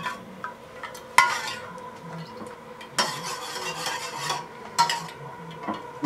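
A metal spoon stirring and scraping around a small enamel saucepan of sauce, with a couple of sharper clinks against the pan about one and three seconds in.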